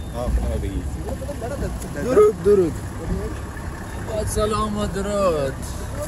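Men's voices talking over the low, steady rumble of a minibus engine idling.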